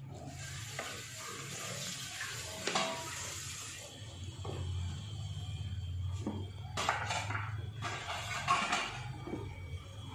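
Hand mixing grated coconut masala, chopped tomato and dried fish in an earthenware pot: a soft, moist rustle for the first few seconds. A few short knocks and rustles follow in the second half, over a steady low hum.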